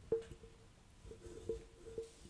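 A few light metallic taps and clicks from a steel ruler being handled and pressed on the cutting table. The first, just after the start, is the sharpest, and each tap leaves a brief faint ring.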